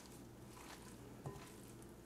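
Near silence: room tone, with one faint short tick a little past the middle.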